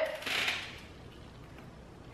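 A short soft noise about a third of a second in, then quiet room tone.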